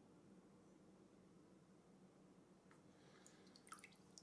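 Near silence: faint room tone with a low steady hum. Near the end, a few faint drips of water as a hand is lifted out of a bowl of water.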